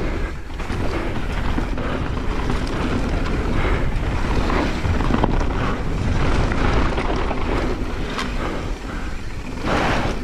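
Wind buffeting a camera microphone over the rumble of mountain-bike tyres rolling fast on a dusty dirt trail, with a couple of short knocks near the end.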